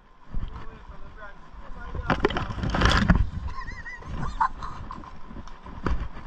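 Low rumbling noise of a camera moving with a walking horse on a trail, swelling into a louder rush two to three seconds in. A short high-pitched wavering call comes about three and a half seconds in.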